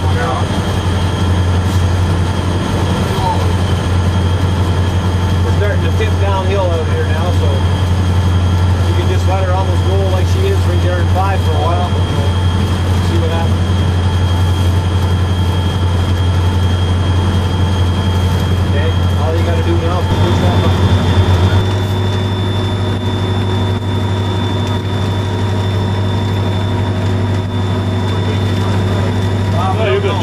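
EMD SD40-2 diesel-electric locomotive's 16-cylinder two-stroke engine running under way, heard from inside the cab as a steady low drone with steady tones over it. The drone shifts in pitch about twenty seconds in.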